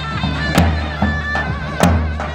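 Davul and zurna playing a folk dance tune. The zurna's reedy melody is held and ornamented over heavy bass-drum beats about every 1.2 seconds, with lighter drum strokes between them.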